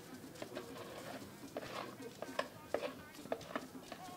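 Several short, sharp light knocks of a plastic bowl against a metal cooking pot, over a faint background with a bird cooing.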